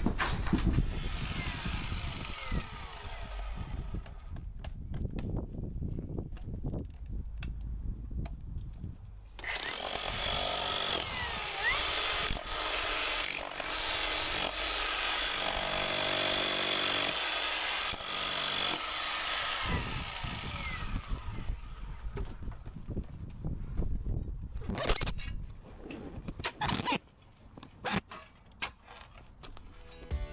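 A cordless electric breaker hammering a chisel into hard backfill at the bottom of a foundation trench, running steadily for about ten seconds in the middle with a high whine. Before and after it come the scrapes and knocks of a spade digging out soil and rubble.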